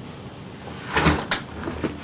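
A glass-panelled door being pulled shut, with two knocks about a second in as it closes and latches, followed by a few softer clicks.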